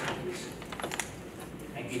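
A few scattered hand claps, sharp separate claps rather than full applause.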